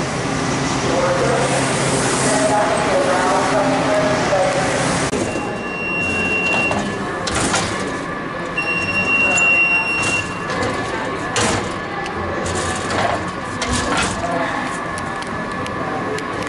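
Crowd voices over a steady low hum in a subway station until about five seconds in. Then a Metro faregate beeps twice, a short steady high beep and then a longer one, with sharp knocks from the gate paddles and footsteps.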